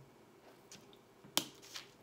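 A single sharp snip about halfway through, with a few fainter ticks before and after: hand cutters clipping through the wire stem of an artificial fern sprig.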